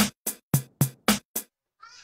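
Intro music: a run of short electronic drum-machine hits, about four a second, that stops about a second and a half in.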